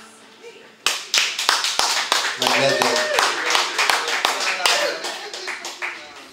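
Small audience clapping, starting suddenly about a second in, with voices calling out over the applause.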